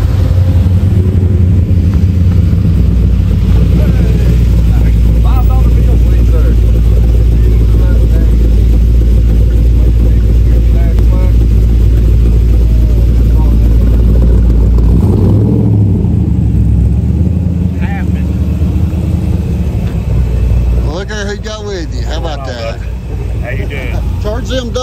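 Classic car engines running close by at low speed, a loud, steady, deep exhaust rumble for the first fifteen seconds. About fifteen seconds in, a brief rev, then a quieter idle.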